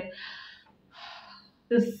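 A woman breathes audibly twice, the first breath right at the start and the second about a second in, then begins to speak near the end.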